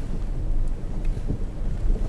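Low, steady rumble of a car moving slowly over a rough road, heard from inside the cabin.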